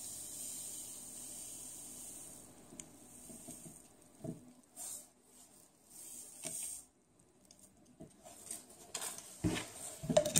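Reagent powder shaken from a torn paper packet into an open plastic bottle: a soft hiss of pouring at first, then faint rustling of the packet and light taps as it is flicked empty. A sharper knock near the end as the bottle's cap is handled.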